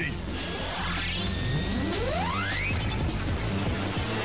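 Action-cartoon background music with sound effects from the futuristic racing machines: a crash-like hit right at the start, then rising whines as a machine speeds up.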